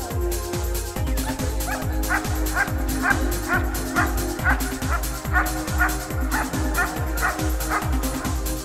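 German shepherd barking at the helper in a hold-and-bark guarding exercise, short barks about twice a second starting about a second and a half in, over electronic dance music with a steady beat.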